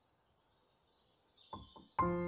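Near silence, with faint high chirping and a couple of soft clicks about one and a half seconds in.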